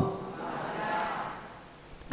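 A pause in a monk's amplified sermon: a faint, drawn-out voiced sound, much quieter than his speech, fading away over the pause.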